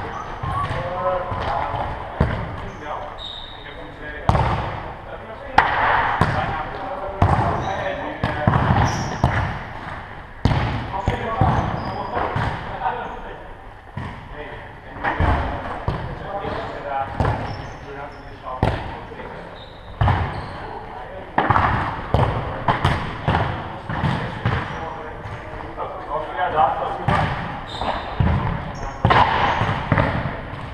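A ball repeatedly thudding and bouncing on a sports-hall floor, each impact ringing in the large echoing hall. Players' shouts and calls come and go, with short high squeaks of shoes on the court.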